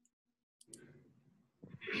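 Two quick computer mouse clicks about two-thirds of a second in, over otherwise near-quiet call audio; a voice starts just before the end.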